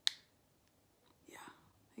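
Quiet speech: a soft, breathy "yeah" about a second and a half in, after a short sharp tick at the very start.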